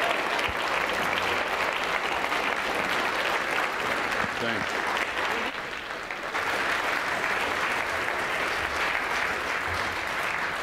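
Large audience applauding steadily, with a brief dip in the clapping about halfway through.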